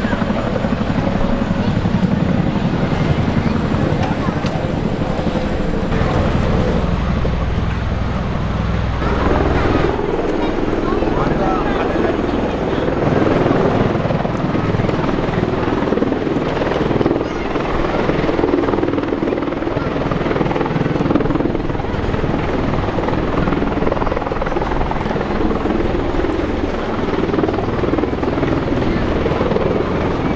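Rotor and engine noise from low-flying military rotorcraft, a CH-47 Chinook and V-22 Osprey tiltrotors. A deep rumble during the first nine seconds or so gives way to a higher, steady drone that lasts to the end.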